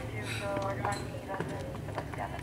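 Indistinct voices talking, with a few light knocks of tennis balls bouncing on a hard court.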